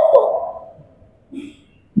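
A man's voice through a microphone, holding out the last vowel of a word, which slides down in pitch and fades away in the first second. A short pause follows, with one brief faint vocal sound.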